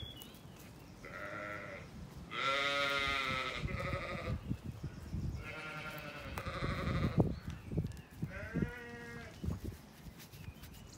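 Zwartbles lamb bleating four times. The second bleat, a few seconds in, is the longest and loudest, with a wavering quaver. A brief thump comes about seven seconds in.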